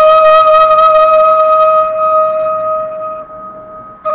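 Background music: a flute holding one long steady note that fades away about three seconds in.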